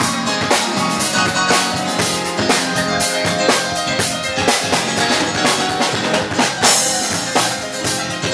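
Live band music: electronic keyboard playing over a steady drum-kit beat of about two beats a second.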